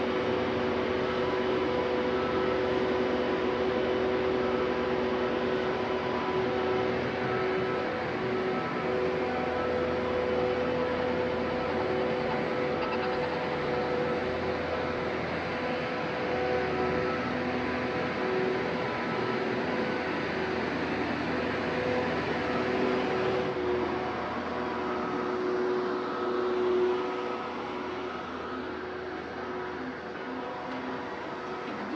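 Steady ambience of a casino-lined pedestrian street: a constant hiss and hum with several held tones that fade in and out. About three-quarters through the sound turns duller and a little quieter.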